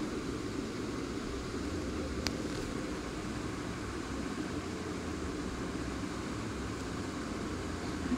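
Steady background hum and hiss, even throughout, with a single faint click a little over two seconds in.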